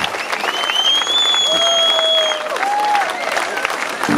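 Audience applauding and cheering between songs at a live concert, with a high steady tone held for about two seconds early in the applause.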